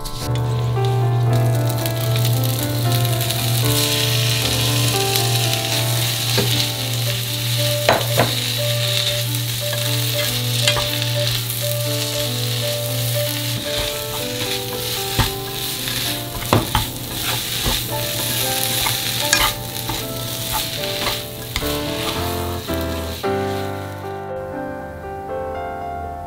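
Chwinamul (blanched aster greens) sizzling in hot perilla oil in a frying pan as it is stir-fried, with sharp clicks now and then as the utensil knocks the pan. A low hum runs under it through the first half, and the sizzle dies away just before the end.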